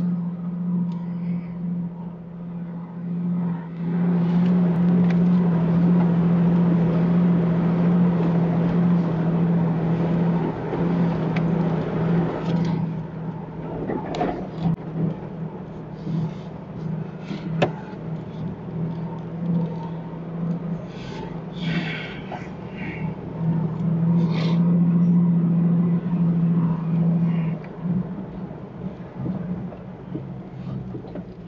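A Jeep driving slowly over a rough dirt track: a steady low engine drone with tyre and road noise that swells in two stretches, and scattered knocks and rattles from the body and suspension over bumps in the middle part.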